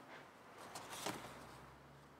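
Faint handling noise with a couple of soft clicks about a second in, from garden pruning shears being picked up and opened to trim a water lily's roots.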